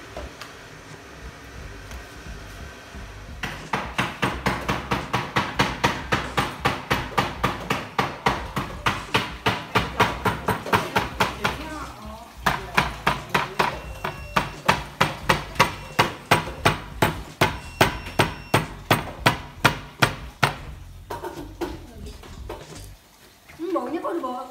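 A knife chopping on a wooden cutting board in a steady rhythm of about three strokes a second, in two long runs broken briefly about twelve seconds in, then a few scattered strokes.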